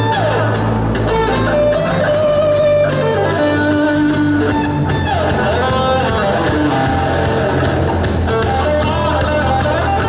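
Live rock band playing loudly through a PA: distorted electric guitars, bass guitar and drum kit with a steady beat.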